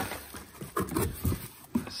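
A cardboard box being opened and handled: flaps pulled back and hands rummaging inside, making a few soft irregular rustles and taps, busiest about a second in.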